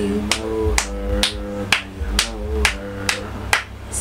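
Intro music: a sharp, clap-like percussive beat about twice a second over held chords.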